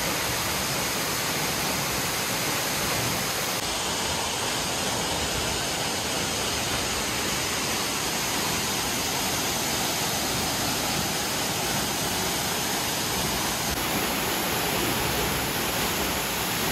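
Steady rushing of a waterfall pouring into a rocky pool, with water running over the stones below it.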